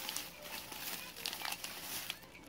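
Thin plastic bag crinkling in irregular small crackles as a hand rummages in it.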